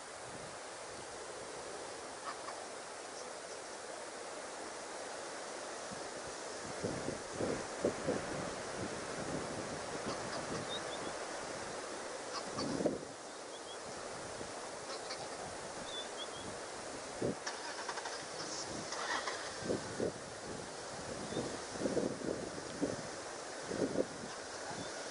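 Outdoor ambience of wind and wind noise on the microphone, with scattered short knocks and a few faint high chirps.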